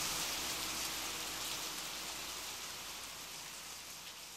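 Rain-like noise, an even hiss of falling drops, used as a sound layer in an electronic music piece and fading steadily out. Faint held low tones under it stop a little over two seconds in.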